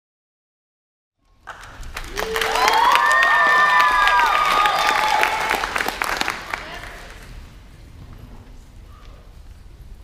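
Audience applauding, with shouted cheers and whoops over the clapping. It starts about a second in, swells and holds for a few seconds, then dies away to a low hum of the hall.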